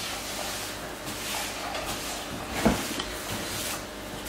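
Quiet handling of wet sourdough dough as it is pulled up and folded by wet hands during a stretch-and-fold, over low room noise, with one soft thump a little past halfway.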